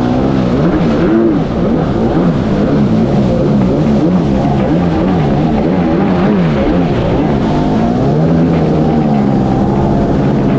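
1998 Kawasaki 750 SXI Pro stand-up jet ski's two-stroke twin engine running hard under way, its pitch rising and falling over and over before settling near the end, over the rush of spray and wind.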